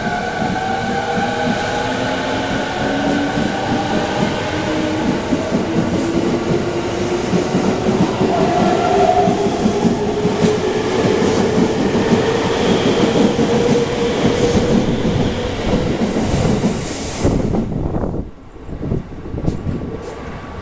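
A JR East 209 series electric multiple unit pulls out of the station. Its motor whine rises steadily in pitch as it accelerates, over wheels clattering on the rails. About seventeen seconds in, the last car passes and the sound falls away.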